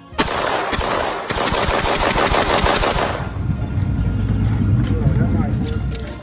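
An AR-style rifle fired in a fast string of shots, closely spaced, for about three seconds. A low rumbling follows for the rest of the time.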